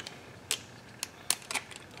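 A handful of small, sharp metal clicks as a thin steel rekeying tool is wedged into a Kwikset doorknob, catching on the spring metal inside while working the lock housing loose.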